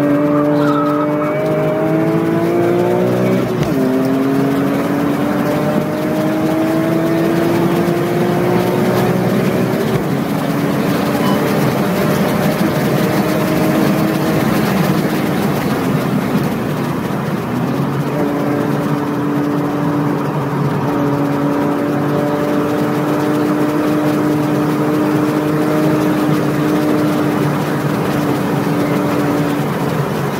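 BMW E46 M3's straight-six engine under hard acceleration, heard from inside the cabin. The revs climb, drop at a quick upshift about three and a half seconds in and climb again, then the engine runs at a fairly steady pitch through the second half, over a constant rush of road and wind noise.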